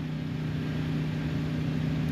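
A truck engine idling with a steady low hum.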